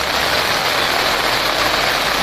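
Heavy rain pouring on a road, a steady loud hiss, mixed with the low rumble of truck and car traffic on the wet roadway.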